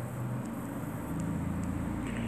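Low steady background hum and rumble, getting a little louder about a second in, with a few faint ticks.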